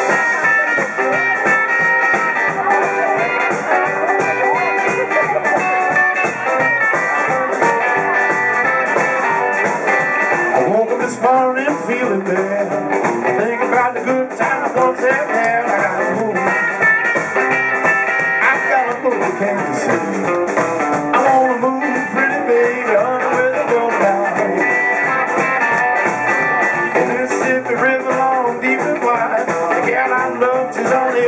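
Live blues band playing a song: amplified electric guitar, bass guitar and drum kit.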